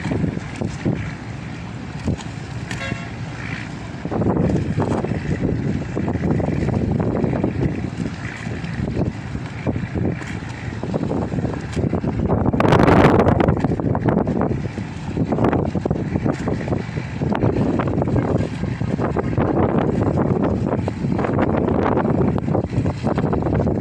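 Wind buffeting the microphone over a steady low rumble, in uneven gusts, with the strongest gust about thirteen seconds in.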